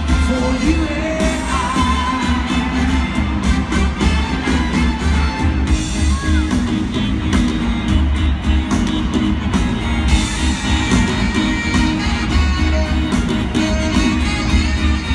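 Live rock band playing loud through a concert sound system, heard from the audience: drums, bass and electric guitars with a steady heavy low end, and a voice singing over it.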